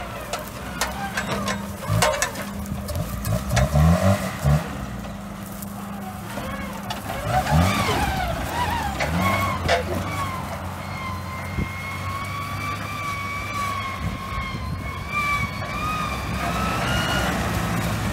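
Lifted Geo Tracker's four-cylinder engine revving repeatedly under load as it climbs over dirt mounds, rising in pitch twice, then running steadily across rough ground. A wavering high-pitched tone sits over the second half.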